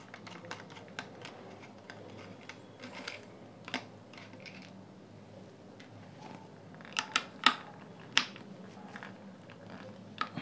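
Small clicks and taps of a screwdriver turning screws out of a speaker's hard plastic housing, with the parts handled in the hand. A few sharper clicks come about seven to eight seconds in, the loudest about seven and a half seconds in.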